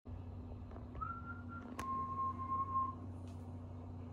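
Faint whistling: a short higher note, then a longer, slightly lower held note that starts with a click, over a steady low hum.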